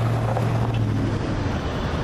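A motor vehicle's engine running nearby with a steady low hum that fades out a little past halfway, over a constant background hiss.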